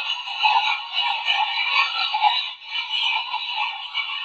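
Thin, garbled voice-like sound with no bass from a defunct portable TV used for an ITC session, running on with uneven swells. It is taken as a spirit voice saying "help us".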